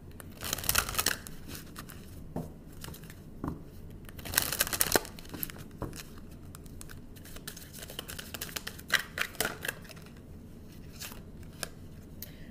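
A deck of tarot cards being shuffled by hand: brushing, flicking card noise in three main bursts, near the start, about four and a half seconds in and about nine seconds in, with scattered taps in between.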